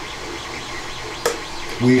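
A single sharp click a little past halfway, over steady background hiss: the switch on a 3D-printed statue's base being pressed, lighting its LED lightsaber and base.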